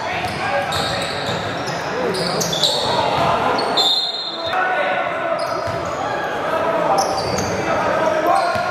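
Sounds of a basketball game in a large gym: a ball bouncing on the hardwood and players' and spectators' voices, with a reverberant hall sound. About four seconds in, a referee's whistle blows briefly and play stops.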